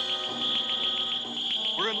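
Cartoon flying-saucer sound effect: a high electronic beep pulsing rapidly, about ten times a second, over sustained eerie tones.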